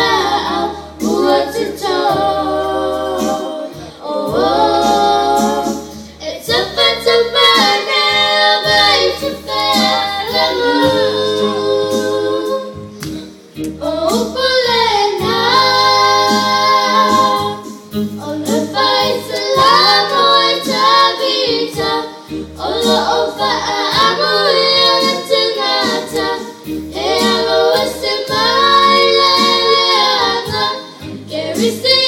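Young girls singing through microphones in phrases a few seconds long, over a low sustained musical accompaniment.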